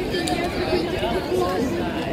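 Indistinct chatter of people talking nearby in a crowd of passers-by, with no single clear voice.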